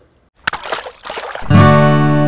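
Intro sting for a show: a water-splash sound effect about half a second in, then a loud guitar chord struck about a second and a half in and left ringing.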